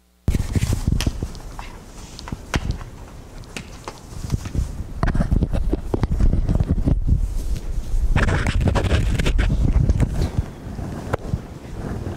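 Microphone handling noise: the recording mic cuts in suddenly about a third of a second in, then picks up irregular rubbing, rustling and knocks with heavy low rumble as it is handled against clothing.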